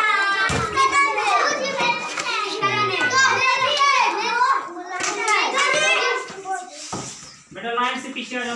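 Many children's voices chattering and calling out over one another, with a sharp knock about half a second in.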